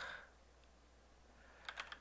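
Near silence, then a few faint keystrokes on a computer keyboard near the end.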